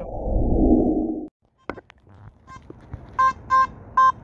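A short, low, noisy sound effect lasting about a second, which cuts off abruptly. Near the end, a Nokta/Makro Simplex+ metal detector with an SP24 coil gives short, repeated beeps about three a second, signalling a target that reads in the 90s.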